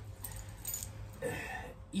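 Metal bangle bracelets jingling and clicking lightly as arms are moved and crossed, in a few short bursts in the first second, over a low steady room hum.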